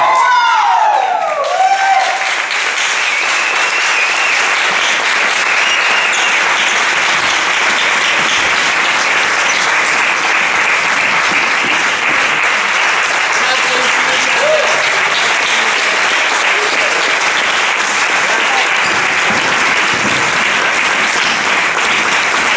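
A live audience applauding steadily, with voices in the crowd. The last sung notes of the music die away in the first couple of seconds as the clapping takes over.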